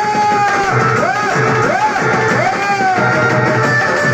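A Telugu devotional folk song playing loudly, with a steady drum beat under a melody that rises and falls in short swoops.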